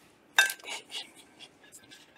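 A single sharp clink about half a second in, as of tubing or fingers knocking the glass jug, followed by faint handling clicks and rustles while a rubber band is threaded onto the blow-off tube.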